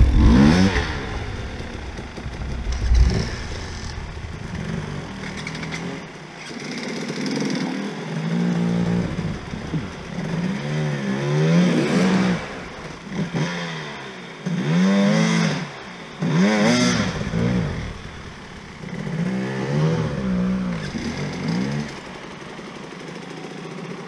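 Enduro dirt bike engines revving hard in repeated bursts under load on a steep climb, each burst rising and falling in pitch.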